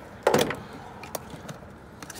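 A single knock as a handheld tool is set down, followed by a few faint clicks and rustles of hands handling tools in a fabric tool backpack.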